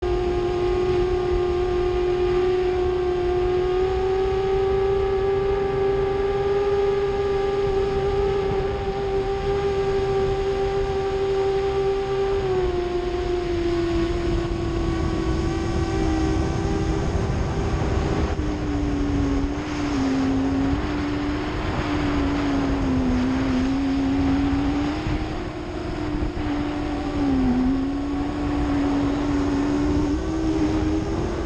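A 7-inch quadcopter's brushless motors and propellers whining at a steady pitch in flight, over a rushing wind noise, as picked up by the onboard GoPro. About halfway through, the pitch drops a little, then wavers with small dips as the throttle changes.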